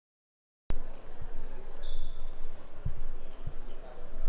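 Silence, then about a second in the sound of a large indoor lobby cuts in: a steady wash of distant voices and footsteps. A few low thumps and two short high squeaks come through it.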